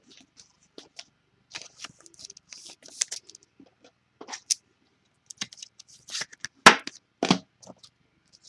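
Trading-card handling: a card being slid into a plastic sleeve and rigid top loader, with scattered small rustles and clicks, then two sharper knocks near the end.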